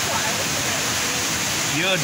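The 40-metre indoor waterfall of the Rain Vortex, a column of water falling from the glass roof into its pool, making a steady, even rush of falling water.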